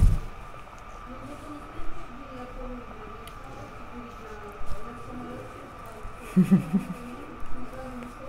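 A short slurp of wine sipped from a glass at the very start, then quiet room noise with faint background voices and a brief hummed 'mm' about six and a half seconds in.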